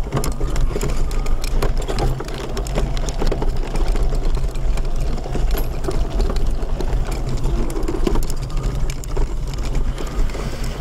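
Mobility scooter's electric motor running steadily as it drives over a rough dirt track, with frequent clicks and rattles from bumps in the ground.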